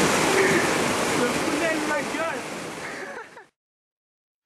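Steady rush of a small rocky stream, with faint voices over it; the sound fades and cuts off completely about three and a half seconds in.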